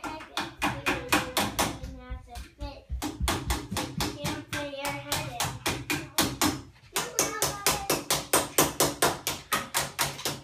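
Rapid, steady tapping on the wooden staircase post, about four to five strikes a second, as a child pretends to hammer in nails. A child's voice is heard briefly twice among the taps.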